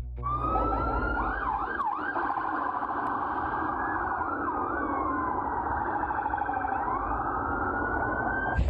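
A vehicle siren sounding, mostly in a slow rising and falling wail, breaking twice into quick yelping sweeps, over a continuous rough din.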